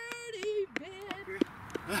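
Young men's voices whooping and laughing in celebration of a holed putt, with a few light clicks.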